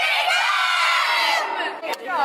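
A group of girls cheering together in a sustained high-pitched shout for about a second and a half, then fading, with a short knock near the end.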